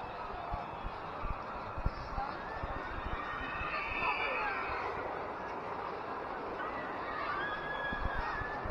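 Outdoor crowd ambience: faint distant voices and calls over a steady background hiss, with soft low knocks from footsteps on a wet path.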